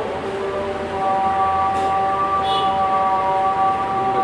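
A voice chanting, holding one long steady note from about a second in, after a short opening phrase.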